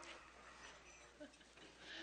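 Near silence: a hushed pause with only faint, indistinct sounds, which swell slightly near the end.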